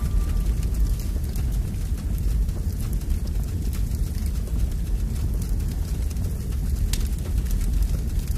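A steady low rumbling noise with faint crackling over it, one crackle standing out near the end.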